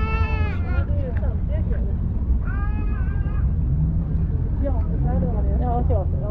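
Two high, drawn-out cries, one right at the start and one about half way through with a falling pitch, over people chatting and a steady low rumble.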